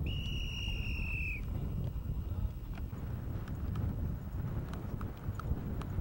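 A whistle blown once, a steady high note lasting about a second and a half at the start, followed by scattered hoofbeats of polo ponies on turf. Wind rumbles on the microphone throughout.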